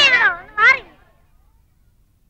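High-pitched children's voices calling out with a rising and falling pitch, cut off under a second in, after which the room falls quiet.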